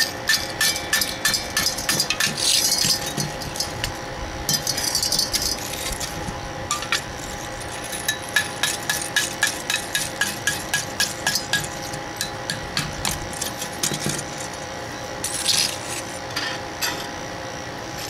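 A hammer tapping the ceramic investment shell off a freshly cast bronze mirror frame held in locking pliers. The taps come in quick runs of several a second with short pauses, as the shell chips away.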